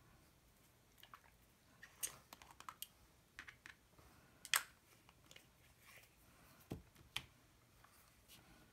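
Faint, scattered clicks and taps of small acrylic ink bottles being handled on a work table, the sharpest a little after halfway. Near the end there is a duller knock and then a click as a bottle is set down.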